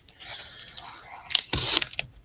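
Cardboard shipping box and packing tape being worked open by hand: a scraping rustle for most of a second, then a couple of sharp clicks and a short, louder rustle with a thump.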